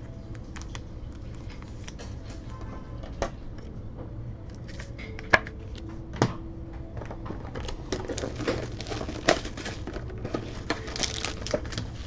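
Sharp clicks and crinkling of a trading-card pack being handled and its wrapper torn open, growing denser and louder over the last few seconds.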